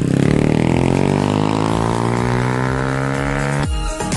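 Small dirt bike engine running as the bike rides away, its pitch rising steadily. It cuts off suddenly near the end, replaced by upbeat music with a beat.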